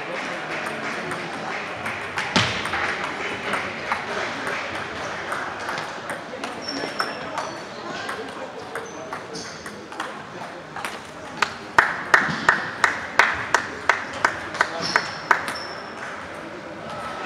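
Table tennis rally: the celluloid ball clicking off rackets and table at about three hits a second, starting about twelve seconds in and ending just before the point is scored. Crowd chatter and scattered ball clicks from other tables in a large hall run underneath.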